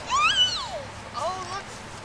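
A young child's high-pitched squealing call that rises and then falls, followed about a second later by a shorter, quieter one.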